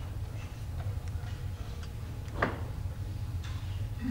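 Steady low room hum with a few faint, irregular clicks and one sharper click about two and a half seconds in.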